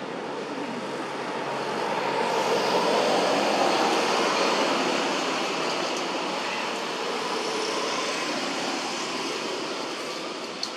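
Rushing noise of a passing vehicle, swelling over the first few seconds, peaking, then slowly fading.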